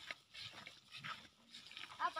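Faint, irregular footsteps of several people walking on a dirt path and dry grass.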